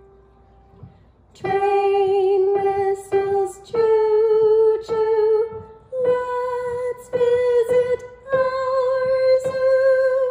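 A woman singing held notes along with single treble notes struck on a Kawai grand piano. After about a second and a half of quiet, the tune climbs in three steps, with short breaks and fresh key strikes between the notes.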